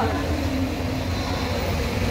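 A vehicle engine idling, a steady low rumble with no change in pitch.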